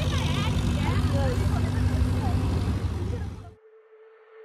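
People's voices over a loud, steady low rumble, which cuts off suddenly about three and a half seconds in, leaving a faint steady hum.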